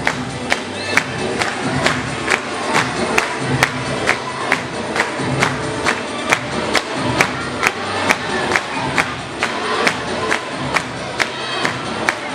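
Dance music playing through a loudspeaker with a crowd of voices cheering and singing along, over a sharp, steady clapping beat about two and a half strikes a second.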